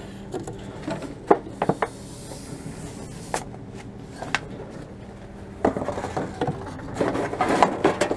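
Empty aluminium cans and plastic bottles knocking and clattering as they are handled in a wire shopping trolley and fed into a TOMRA reverse vending machine, over a steady low hum. The knocks are scattered at first, and the clatter gets busier in the last couple of seconds.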